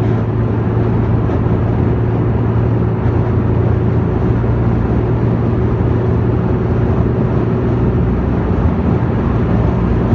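Steady road and engine noise inside the cabin of a moving car, with a constant low hum under it.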